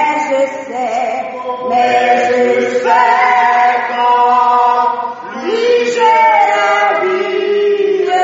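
Church congregation singing a French hymn together in slow, held notes.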